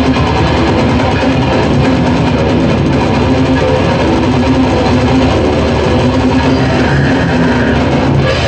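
Old-school death metal band playing live: a loud, steady wall of distorted electric guitars with the full band.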